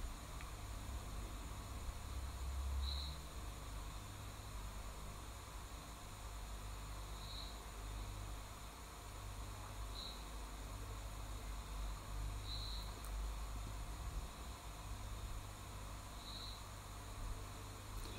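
Faint open-air ambience with a short, high chirp repeated five times, a few seconds apart, over a low rumble.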